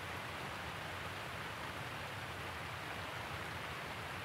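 Steady, faint hiss of outdoor background noise with no distinct sounds in it.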